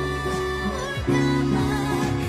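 Acoustic guitar playing sustained chords, with a new chord struck about a second in.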